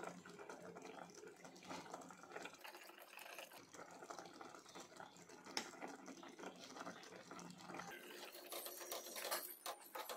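Faint bubbling of a spinach gravy simmering in a pot, with a few sharp clicks of a steel spoon against the pot near the end.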